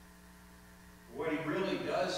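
Steady electrical mains hum on the sound system. About a second in, a man's voice starts speaking over it.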